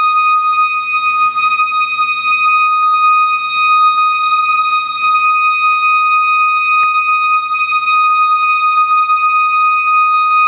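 A woodwind ensemble holding a single high note, steady and unbroken, with faint softer sounds beneath it.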